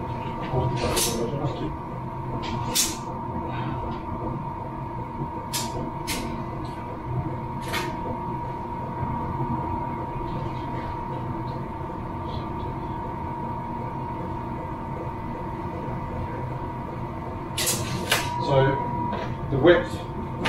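Wooden pine boards knocking and clattering as they are handled and held up against a wall, a handful of sharp knocks spread through, with a cluster near the end. A steady high-pitched hum runs underneath.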